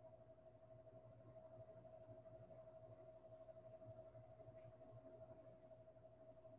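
Near silence: room tone with one faint, steady, slightly wavering tone.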